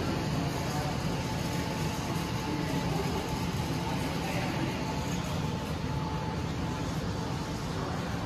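Steady room noise of a large indoor hall: a constant low rumble and hiss with a faint steady tone, no distinct events.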